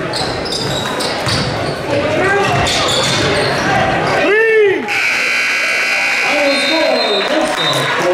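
Basketball bouncing on a hardwood gym floor amid crowd chatter and shouts, with one loud shout that rises and falls about four seconds in. A steady high-pitched tone follows for about two seconds.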